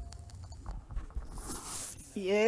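Faint rustling and small clicks of handling noise close to the microphone, with a soft hiss near the end, in the short lull after a tune stops.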